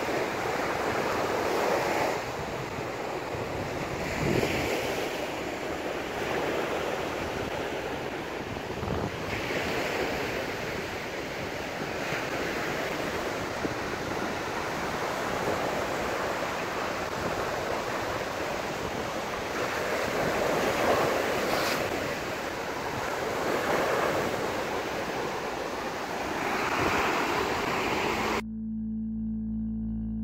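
Sea surf breaking on a sandy beach, a steady wash of water that swells as each wave comes in every few seconds. Near the end it cuts off suddenly and music begins.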